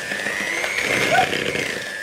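Electric hand mixer running steadily with a high whine, its beaters creaming butter and sugar in a plastic bowl.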